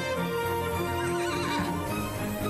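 Background music with a horse whinny sound effect, a wavering call about a second in.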